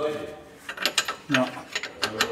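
Irregular metallic clicking and ratcheting of hand tools working on the Hyundai H1 4x4's driveshaft at its joint and flange.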